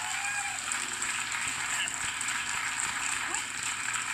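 Indistinct voices under a steady hiss: talk-show audio played through a speaker and re-recorded, so it sounds thin and muffled.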